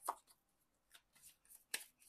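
Tarot cards being handled in the hand: a few soft flicks and snaps of the card stock, the sharpest one near the end.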